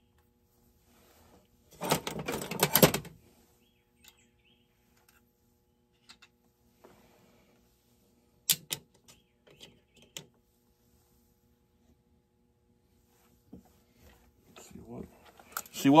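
Handling noise as a chainsaw is taken apart on a workbench. A loud burst of rapid rattling clicks comes about two seconds in and lasts about a second, followed by a few scattered sharp clicks and knocks.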